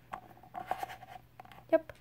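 Light plastic clicks and scratches from a Littlest Pet Shop St. Bernard toy as fingers press and wobble its bobble head on its body.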